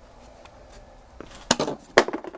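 Two sharp knocks about half a second apart near the end, the second the louder, as the removed plastic engine cover is set down.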